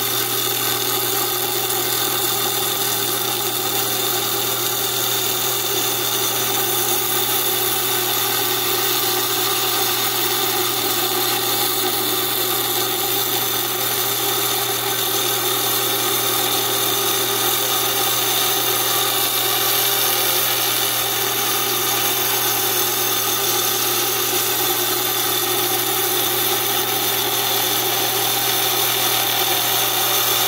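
Small wet lapidary saw running steadily with a constant hum while an agate is pushed slowly through the blade.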